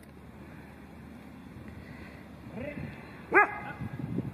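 A dog barks once, short and sharp, about three and a half seconds in, with a fainter call just before it.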